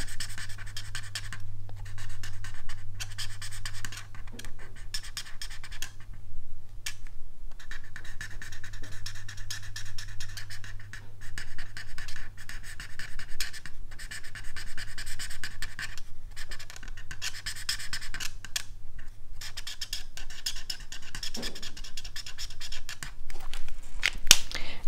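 Stampin' Blends alcohol marker (the light Pumpkin Pie shade) scratching over white cardstock in many quick strokes while colouring in a stamped pumpkin, with a few brief pauses where the tip lifts.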